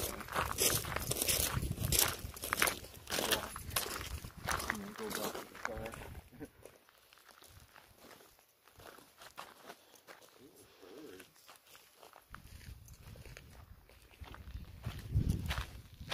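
Footsteps crunching on gravel, mixed with faint, indistinct voices, for the first six seconds or so. Then several seconds of near quiet, before steps and small sounds pick up again near the end.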